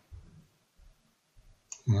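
A few faint, low clicks in a pause between a man's spoken words. The speech resumes near the end.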